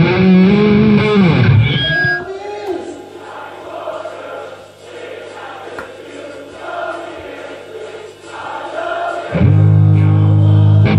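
Loud, distorted electric guitar chords ring and die away about two seconds in, leaving a quieter passage of the rock song with singing over it. The loud guitar chords come back in about a second before the end.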